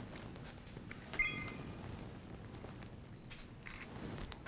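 Quiet room tone with a few light handling clicks and one brief, faint high tone about a second in.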